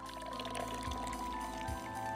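Soft background music with long held notes.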